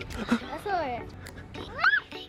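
A toddler's high squeals while running and playing: one falling squeal about half a second in, and a sharp rising one near the end.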